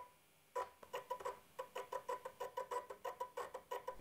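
The small electric motor of a DIY linear drive, pulsed by an Arduino to turn the threaded rod in single sensor-disc steps: a faint run of short buzzing ticks, about six a second, beginning about half a second in.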